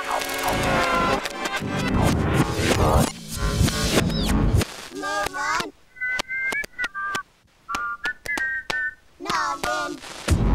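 Music and cartoon sound effects from a TV channel bumper. In the second half, short whistle-like notes in pairs are broken up by a run of sharp clicks.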